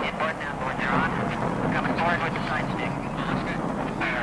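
Lo-fi live rave recording: a dense drum and bass mix with voices shouting over it, no words clear.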